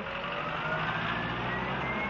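A motor vehicle driving past on the road: a steady rush of engine and tyre noise with a whine that rises slowly in pitch as it accelerates.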